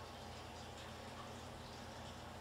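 Quiet room tone with a faint, steady low hum; nothing else happens.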